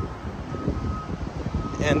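Wind rumbling on the microphone, with a faint reversing alarm beeping about once a second behind it.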